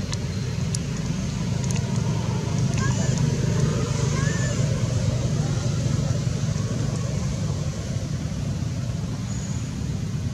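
Steady low rumbling background noise outdoors, with a few faint short rising chirps about three to four seconds in.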